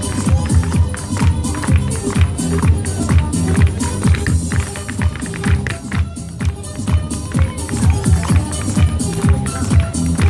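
Irish dance music playing over a sound system, with the dancers' shoes striking a wooden dance floor in quick, rhythmic steps throughout.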